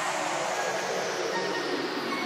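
A falling whoosh of filtered noise, an electronic sweep effect in a club dance mix, sliding steadily down in pitch as a transition, with a couple of short high notes coming in near the end.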